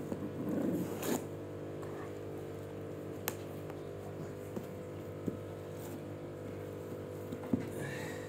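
A few light taps of small hands on a cardboard box over a steady background hum, with a short burst of sound about a second in.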